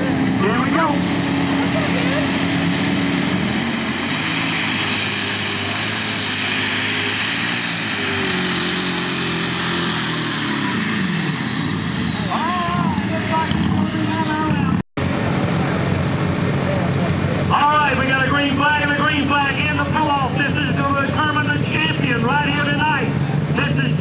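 Super Stock pulling tractor's multi-turbocharged diesel engine at full power on a pull: a high turbo whine climbs to a scream within a few seconds, holds, then falls away about eleven seconds in. After a break, voices over idling engines.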